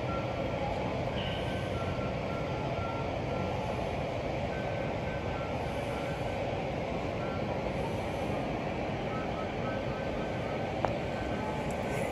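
Steady indoor background noise with faint electronic beeps repeating in short runs throughout, alternating between two close pitches, and a single click near the end.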